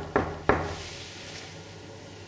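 Knuckles rapping a painted cupboard door: quick knocks in the first half second, then only a steady low room hum.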